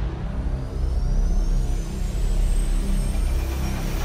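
Cinematic logo-sting sound design: a deep, steady low rumble with faint high-pitched tones rising slowly through it.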